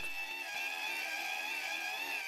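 Hand-cranked geared DC motor running as a generator at about 6000 rpm, its 1:50 gearbox and motor giving a steady high whine of several held tones. The crank is turned at 120 rpm under light load.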